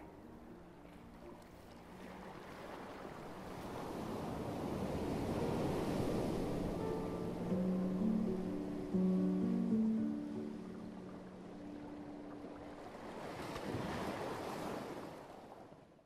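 Sea surf washing in, swelling in two long surges, the second one near the end, under soft background music with held notes.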